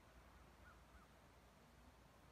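Near silence: faint outdoor background hiss, with two faint short chirps a little under a second in.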